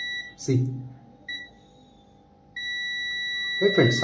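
UNI-T digital multimeter's continuity buzzer beeping in a steady high tone as its probes touch a point on a laptop motherboard, the sign of near-zero resistance between the probes. The beep breaks off about half a second in, blips briefly just after a second, and sounds steadily again from about two and a half seconds.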